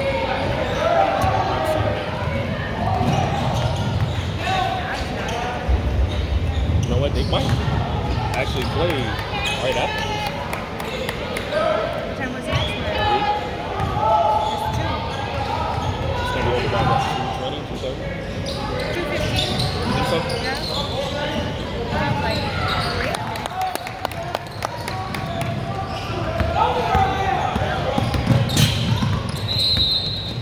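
Sounds of a basketball game in a large, echoing gymnasium: overlapping, indistinct voices of spectators and players, with a basketball bouncing on the hardwood floor.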